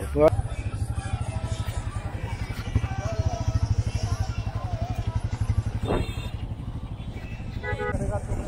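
Motorcycle engine running at a steady pace, a rapid low pulsing, with one sharp knock about six seconds in.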